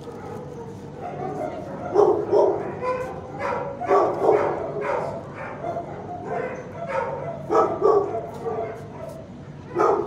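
Dogs barking in a shelter kennel room. Loud barks come in close pairs about two seconds in, around four seconds and near eight seconds, with another just before the end, over steady fainter barking from other dogs.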